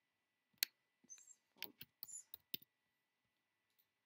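Computer keyboard and mouse clicks: one sharp click, then a quick run of key taps over about two seconds as a short file name is typed.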